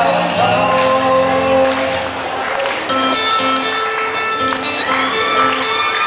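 Live amplified band music from acoustic and electric guitars, with singing into microphones.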